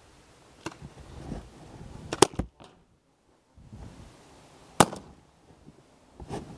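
Paintball pistol shots: a faint sharp pop, then two loud ones, a quick double pop about two seconds in and a single pop nearly five seconds in, with rustling movement between.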